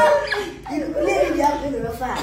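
A group of people laughing hard together, with high, whining vocal sounds.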